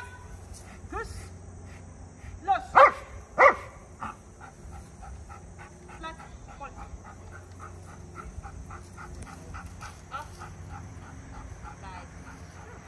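A dog gives two loud, sharp, high-pitched barks about three seconds in. It then pants fast and steadily, about four breaths a second.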